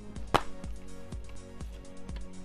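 Plastic DVD case snapped open with one sharp click, followed by a few fainter handling clicks, over quiet background music.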